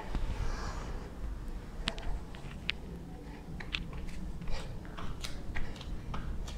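Scattered small clicks and soft rustles of a person moving down onto a yoga mat into a plank, over a low steady room rumble. The clicks come more often in the second half.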